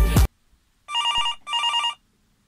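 Telephone ringing: one double ring, two warbling electronic trills of about half a second each, starting about a second in. Music cuts off abruptly just before it.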